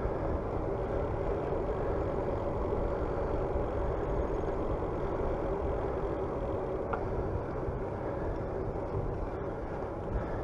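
Steady rush of riding wind on the microphone with the bicycle's tyres rolling on asphalt, a constant low rumble with a hum in it.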